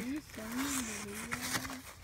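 Paper wrapping and a cloth drawstring bag rustling as a hand reaches inside, under a woman's quiet wordless hum.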